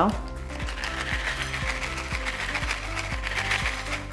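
Crunchy oat cereal pieces shaken out of a small sachet and pattering onto a plate, a dense, rapid rattle of small clicks.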